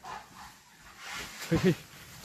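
A dog barking twice in quick succession, short and loud, about one and a half seconds in, over a fainter rustle of movement through undergrowth.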